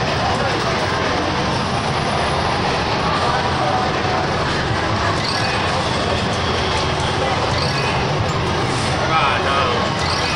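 Steady, loud arcade din: a dense mix of crowd chatter and game-machine noise with no single sound standing out.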